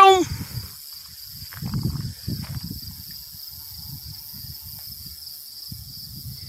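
Steady high-pitched chorus of insects, with uneven low rumbles underneath.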